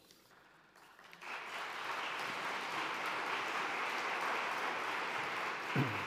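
Audience applauding, starting about a second in after a brief hush and holding steady.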